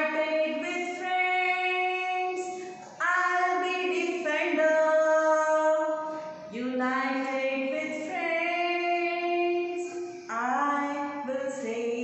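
A woman singing a children's song about the earth without accompaniment, in phrases of three to four seconds with long held notes and short breaks between them.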